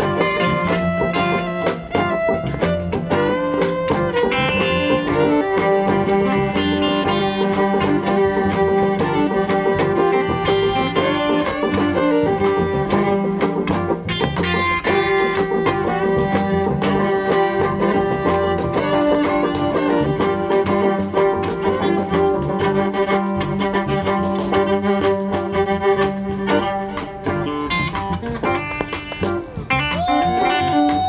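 Live band playing an instrumental passage: a fiddle over electric guitars and banjo, with steady rhythmic picking throughout.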